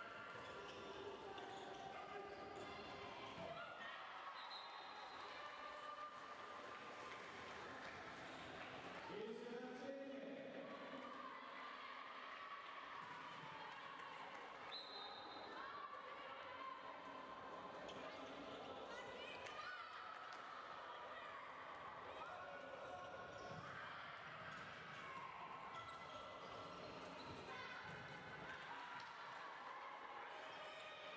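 Indoor handball game: a handball bouncing on the wooden court with scattered knocks, under players' and coaches' shouted calls in a large sports hall.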